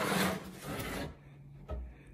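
Rubbing and scraping from a mannequin being handled and turned, lasting about a second, then fainter handling noise.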